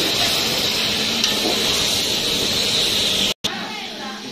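Small whole brinjals frying in hot oil in a steel pan, sizzling with a steady hiss. The sound breaks off abruptly just before the end and comes back much quieter.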